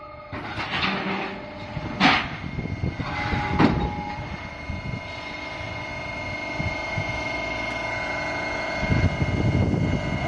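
QT4-15 hydraulic concrete block making machine working through a cycle: three loud metal clanks in the first four seconds, then a steady machine hum with a held whine, louder near the end, as a pallet of fresh blocks is pushed out onto the conveyor.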